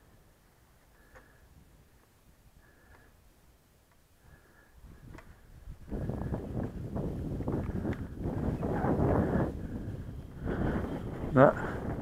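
Gusty wind buffeting the microphone, rising about five seconds in and staying loud and uneven. Before that, faint short high beeps repeat about every second and a half.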